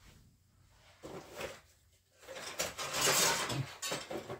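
Handling noises as objects are moved about off camera, the loudest a scraping, sliding noise lasting about a second and a half in the second half.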